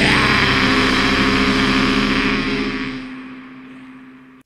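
The final held chord of a black metal song: a distorted guitar chord with a dense wash of noise and a steady low note, ringing out and fading away over the second half.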